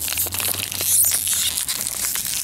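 A foil toy blind bag being crinkled and torn open by hand, the loudest tearing about a second in.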